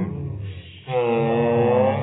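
Girls' voices singing a long wordless note together, held for about a second after a short break, with the pitch bending slightly.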